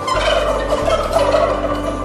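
A domestic turkey gobbling once, a loud rapid rattling call lasting about a second and a half.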